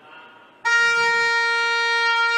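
A single loud, steady horn blast with a fixed high pitch, cutting in abruptly about half a second in and holding for about two seconds.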